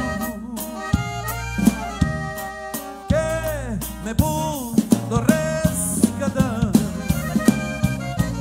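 Live band playing an upbeat worship song: drum kit keeping a steady beat under electric bass, with a saxophone and vocal melody on top.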